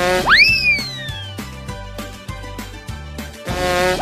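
Upbeat background music with a steady beat, overlaid with a cartoon sound effect: a rising whoosh that shoots up into a whistle and then slides slowly down in pitch, about a third of a second in, with the same effect starting again near the end.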